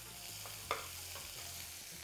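Chopped onions sizzling quietly in oil in an aluminium pressure cooker as a slotted metal spatula stirs them. There is one sharp tap of the spatula against the pot about two-thirds of a second in.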